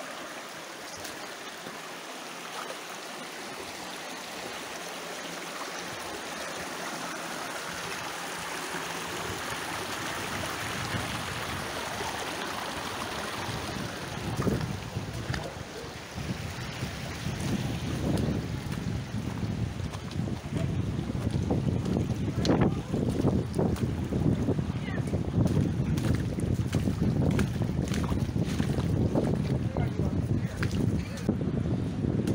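Shallow rocky creek running over stones, a steady rush that grows louder. From about halfway through, gusty low rumbling of wind on the microphone comes in and becomes the loudest sound.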